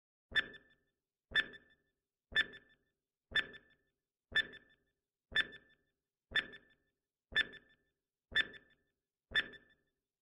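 Countdown timer sound effect: ten short, pitched ticks, one every second, each dying away quickly.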